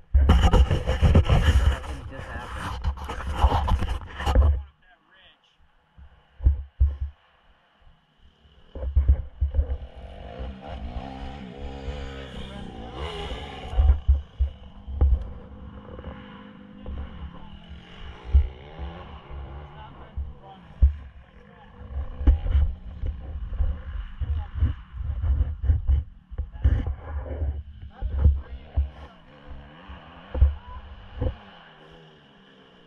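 Irregular low rumbling buffets on the camera microphone, with muffled voices. A loud rushing noise fills the first few seconds.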